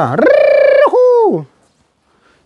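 A person's drawn-out, sung 'Да-а' (yes): a long held note that wavers, then a second note gliding down, about a second and a half in all.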